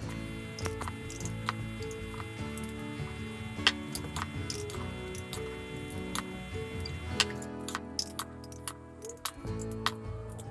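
Background guitar music with held notes, with scattered sharp clicks and clinks of a metal spoon and glass jars as tuna is spooned into jars; one clink stands out a little under four seconds in.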